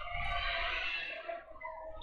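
Gymnasium crowd ambience: a low murmur of spectators and scattered voices in the hall between volleyball rallies.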